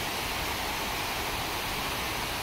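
Steady, even rushing of a nearby waterfall.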